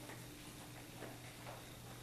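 Faint footsteps on a hard hallway floor, about two steps a second, over a steady low hum.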